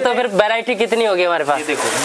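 Men talking, with plastic polybag packets crinkling as they are handled, the crinkle strongest near the end.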